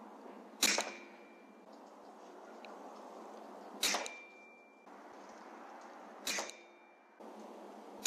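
Three shots from an Air Arms S510 Extra FAC .22 PCP air rifle, sharp cracks two to three seconds apart, each followed by a brief ringing tone. A fourth shot goes off right at the end.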